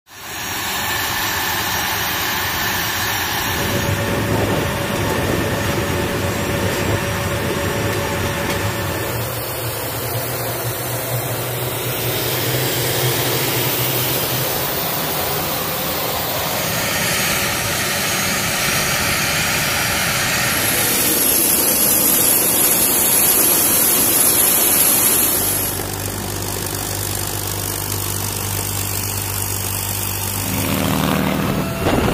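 Steady jet engine noise from an A-10C Thunderbolt II's twin TF34 turbofan engines running on the ground, with a high whine over the noise for a few seconds near the end. The sound changes abruptly several times.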